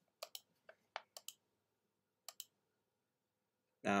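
Computer mouse buttons clicking: about eight short, sharp clicks in the first two and a half seconds, some in quick pairs.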